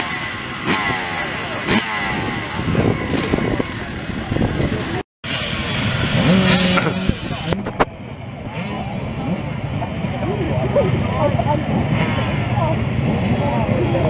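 A crowd of off-road enduro motorcycle engines idling and revving together, throttles blipped up and down as the engines are warmed before the start. There is a brief dropout about five seconds in, and the sound is duller from about eight seconds on.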